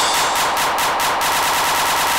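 A rapid roll of sharp electronic percussion hits in an uptempo terrorcore track, speeding up until the hits run together into a buzz near the end: a build-up roll.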